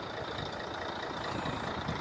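Steady low rumble of an idling vehicle engine, with a faint steady high whine over it.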